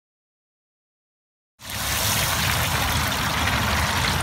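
Silence, then about a second and a half in, fish frying in a pot of hot oil on an outdoor propane fryer cuts in abruptly: a steady sizzling hiss with a low rumble underneath.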